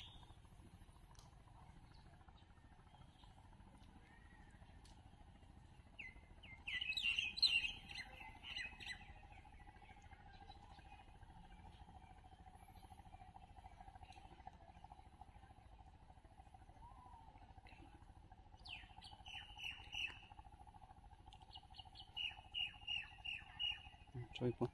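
Bird chirping: a burst of quick chirps about six seconds in, and more runs of rapid chirps near the end, over faint outdoor background with a thin steady tone.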